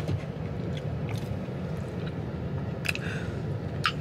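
A person chewing food inside a car, over the steady low hum of the car. A few faint clicks come about a second in, near three seconds and just before the end.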